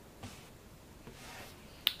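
A low, quiet background with faint hiss, then a single sharp click near the end.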